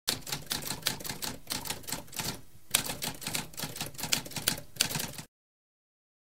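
Typewriter typing: a fast, uneven run of key strikes, several a second, with a short pause about halfway through. The typing stops abruptly about five seconds in.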